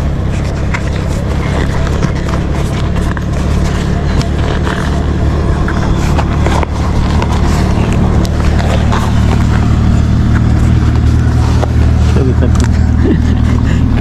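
Steady low rumble of road traffic, with scattered light clicks and rubs as a bicycle tyre and inner tube are worked onto the rim by hand. A voice starts in near the end.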